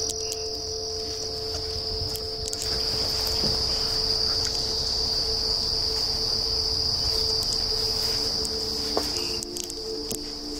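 A steady, high-pitched chorus of insects shrilling without pause, with a fainter steady hum beneath it and a few faint clicks.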